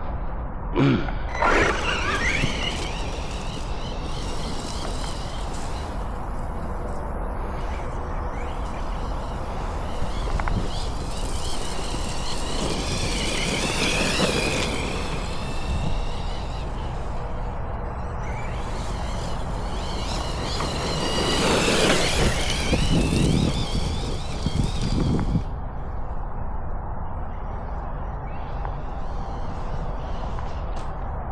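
Losi Hammer Rey RC rock racer's brushless motor and drivetrain whining, the pitch rising and falling as the truck speeds up and slows, on a 3S battery. There are several runs, the longest in the second half, over a steady low rumbling noise.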